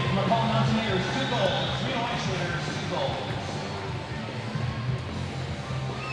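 Music with a steady bass line playing over an ice rink's public-address system, with voices and chatter from the crowd and players in the arena, and a few faint knocks.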